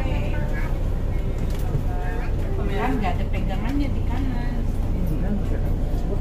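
Steady low rumble of a city bus's engine heard from inside the passenger cabin, with indistinct talking in the background.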